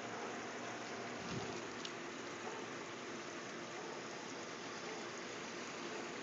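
Filtered water pouring from a PVC return pipe into a koi pond, a steady splashing rush.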